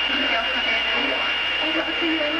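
Two-way radio channel open with a steady hiss of static and a thin, steady high whine, with a faint, unintelligible voice breaking through.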